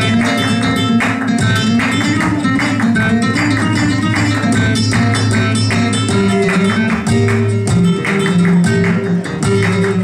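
Flamenco guitar playing a tangos, with rhythmic hand clapping (palmas) from the singer and two palmeros keeping the beat.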